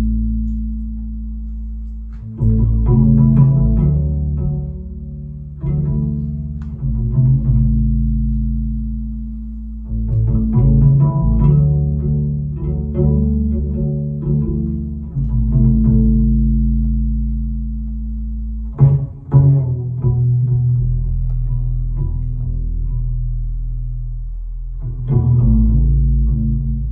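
Solo upright double bass played pizzicato: plucked low notes and chords that ring on and slowly fade, with a new phrase struck every few seconds.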